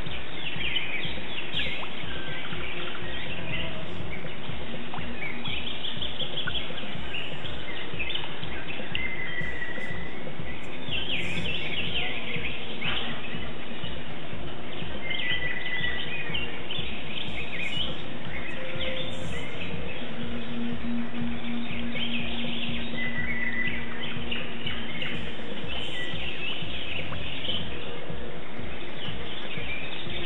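Small birds chirping and twittering again and again over a steady bed of background music.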